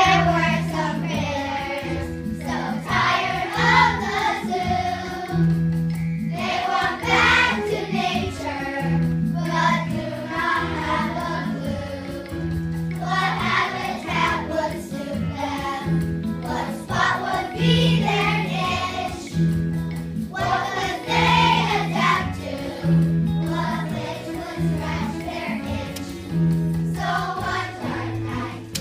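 A children's choir of third graders singing a song together over an instrumental accompaniment with a recurring bass note.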